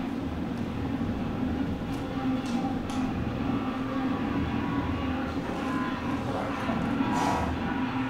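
A steady low mechanical hum with a constant droning tone, like a fan or air-handling unit running, with a few faint clicks and rustles of lifting straps being handled.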